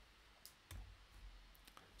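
Near-silent room tone with two faint clicks about half a second in, from a computer mouse advancing a presentation slide.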